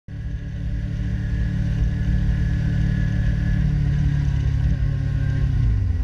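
Kawasaki Ninja 300's parallel-twin engine running under way on the road, a steady engine note whose pitch falls near the end.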